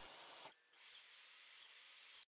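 Near silence: a faint, even hiss of room tone that drops out briefly about half a second in.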